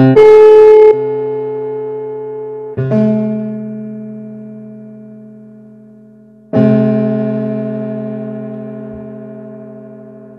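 Chords played on a 31-tone equal-temperament keyboard, sounding the 31-EDO double-augmented fifth, which stands in for the 13th harmonic. A chord already sounding changes just after the start and drops at about a second in. Fresh chords are struck at about three and six and a half seconds in, each left to ring and fade.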